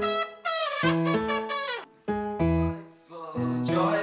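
A band playing: a trumpet sounds a melody in short held phrases over guitar accompaniment.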